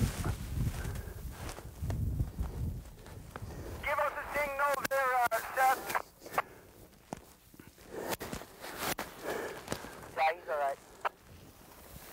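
Low rumbling noise, then a high voice calling out with a wavering pitch for under two seconds, with scattered sharp clicks after it and a shorter call near the end.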